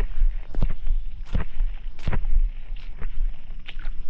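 Low wind rumble on the microphone, with several short, sharp clicks scattered through it.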